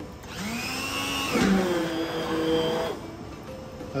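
Electric immersion blender running in a pot of pressure-cooked meat and chickpeas, pureeing them into a paste for qeema. Its motor whine shifts in pitch as it works through the thick mixture, and it stops about three seconds in.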